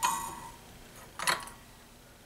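Two light metallic clinks, the first at the start and a second about 1.3 seconds in, each ringing briefly. They come from a steel lifting fork knocking against a steel enameling stilt as it slides under a freshly fired enameled copper piece to lift it off.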